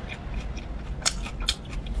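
Close-miked chewing of a bite of batter-coated sausage on a stick, with small wet clicks and two sharp crisp snaps about one and one and a half seconds in.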